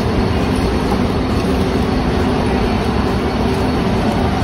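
Loud, steady din of a busy warehouse store's checkout area: a dense, rumbling background noise with no single clear event.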